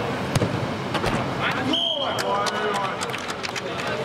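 Football kicked with a sharp thud near the start, then more ball thuds and players' shouts echoing under the air-dome roof. About two seconds in, a short steady whistle blast, typical of a referee stopping play.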